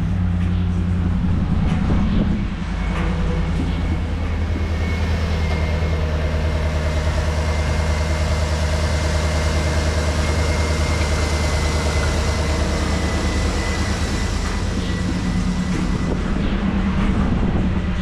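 2013 GMC Yukon's 6.2 L V8 engine running at idle, a little louder for the first two seconds or so before settling into a steady idle. A faint high whine sits over it through the middle.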